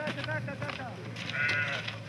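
An animal call, loudest about a second and a half in, with people's voices around it.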